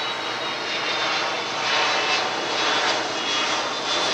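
Aircraft passing overhead: a steady roar that swells a little about halfway through.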